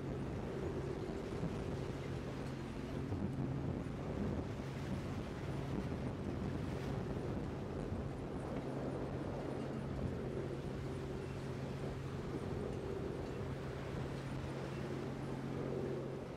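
Boat engine running with a steady low drone, mixed with wind on the microphone and the rush of open sea.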